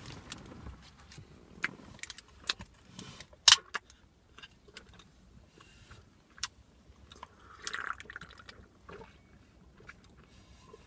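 A person chewing a mouthful of protein bar with the mouth closed, with scattered sharp crinkles of its foil wrapper; the loudest crinkle comes about three and a half seconds in.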